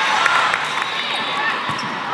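A volleyball bouncing several times on the court floor, short knocks in the first second or so, over the voices of players and spectators.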